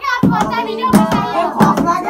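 Rhythmic hand clapping, about three claps a second, with a group of young men's voices chanting along.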